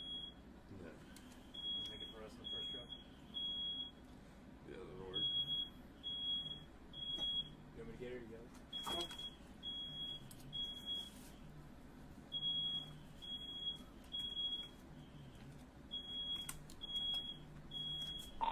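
Smoke alarm sounding the three-beep evacuation pattern: sets of three short high beeps with a pause between sets, repeating about every three and a half seconds. It is set off by smoke from a firework that went off in the room.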